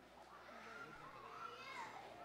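Faint chatter of young voices in the background.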